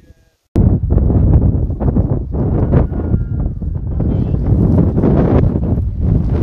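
Strong wind buffeting a phone's microphone: a loud, rough, low rumble that starts abruptly about half a second in and keeps fluttering unevenly.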